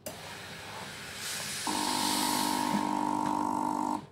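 Floor steam cleaner releasing steam with a hiss that grows stronger about a second in; a steady buzz from its pump joins partway through, and both cut off suddenly when the steam is stopped.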